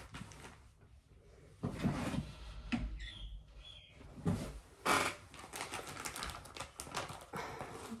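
Rustling and light knocks from cross-stitch projects and their bags being handled. About three seconds in come a couple of faint, short, high chirps from a pet bird.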